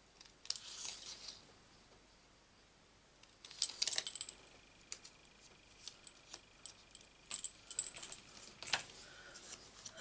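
Small craft scissors snipping card stock about half a second in, then a run of light clicks and taps as small tools and card are handled on the work desk.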